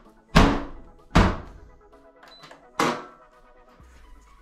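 A front-loading washing machine's door pushed shut with a loud thunk, followed by two more thuds about a second and then a second and a half later. Background music plays underneath.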